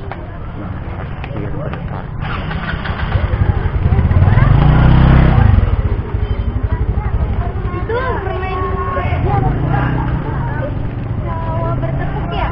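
A motorcycle engine passing close by, growing louder about three seconds in and dropping away at about six seconds, over the chatter of many voices.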